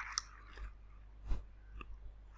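A few faint, scattered clicks, about four in two seconds, with a soft breath-like hiss at the start; otherwise quiet room tone.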